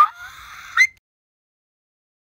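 A woman's short, high-pitched, breathy vocal sound with a brief rising squeak at each end. It cuts off after about a second into dead silence.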